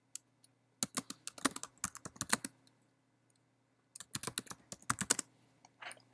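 Typing on a computer keyboard: two quick runs of key clicks with a pause of over a second between them.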